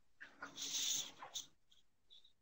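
A faint in-breath lasting about half a second, with a few small mouth clicks around it, as a speaker pauses mid-sentence before going on.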